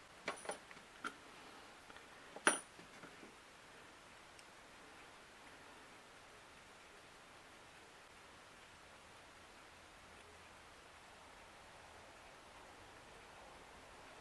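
A few light clicks of small steel five-sided cutting broaches knocking together as one is picked from the set, the sharpest about two and a half seconds in, then only faint room tone.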